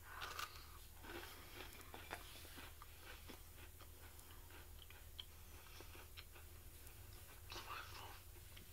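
Faint chewing of a bite of soft, chewy-crunchy sugar cookie, with scattered small crunches and mouth clicks, over a low steady hum.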